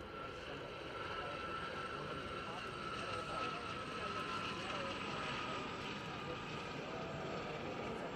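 SOKO-built Gazelle military helicopters flying past, their rotors and turbine making a steady drone with a thin, steady high whine.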